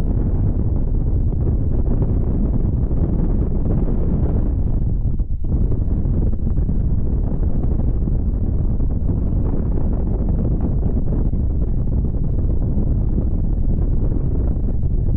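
Wind blowing across the microphone: a steady, loud low rumble, with a brief dip about five seconds in.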